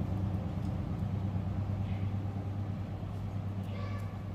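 Steady low electrical hum with faint room background noise.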